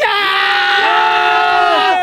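Several young men cheering together in one long held shout, a second voice joining partway in, dying away at the end after about two seconds.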